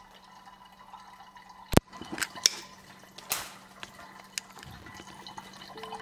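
Water dripping into the glass pitcher of a SANS countertop reverse-osmosis water purifier once its pump has stopped drawing water through. There are a handful of separate drips, the loudest a sharp one just before two seconds in.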